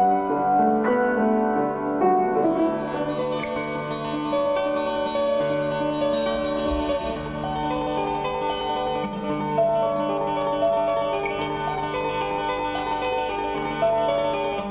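Solo instrumental music: piano for the first couple of seconds, then a fingerpicked acoustic guitar playing a slow, arpeggiated piece with notes left to ring.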